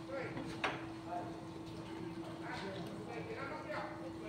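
People's voices talking in the background, with one sharp knock about half a second in over a steady low hum.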